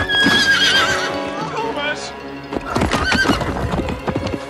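A horse whinnying: one long call about a second long with a wavering end at the start, then hooves clattering and a second call about three seconds in, over music.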